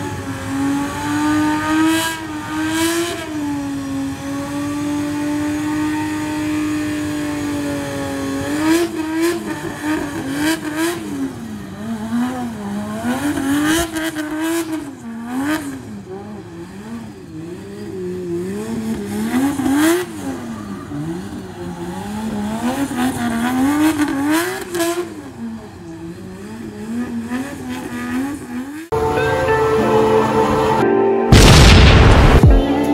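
Drift car's engine revving hard as it slides: the revs hold fairly steady for a few seconds, then rise and fall rapidly again and again, with tyre noise. About a second before the end it cuts abruptly to music.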